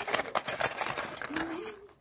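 Small metal hand tools, a spark plug wrench and Allen keys, clinking and rattling together as they are pulled out of a fabric tool pouch, with the pouch rustling.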